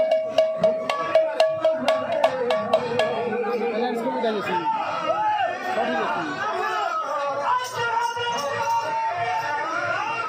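A hand-played barrel drum beats a quick rhythm of about three strokes a second over a held pitched note for the first three seconds of kirtan music. After that the drumming drops away and voices and chatter carry on.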